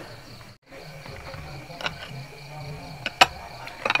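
Quiet table-side room sound with a faint steady high insect trill, cut off briefly about half a second in, and a few sharp clicks and taps from food and dishes being handled on the table, the loudest about three seconds in.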